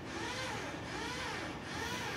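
Faint whine of a power drill, its pitch rising and falling over and over, about twice a second.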